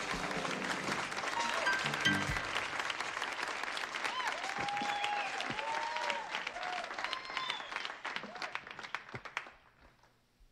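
Club audience applauding, with a few whistles through the middle and a brief stretch of band music near the start. The applause thins out and stops shortly before the end.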